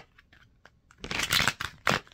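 A deck of cards being shuffled by hand: a few faint clicks, then a dense burst of shuffling about a second in, ending with a sharper slap of the cards near the end.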